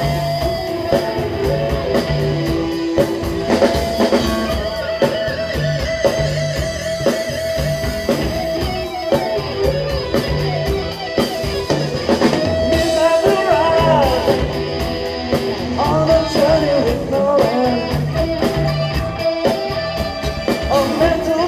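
Live rock band playing with electric guitar, keyboards, bass and drum kit, heard through the room.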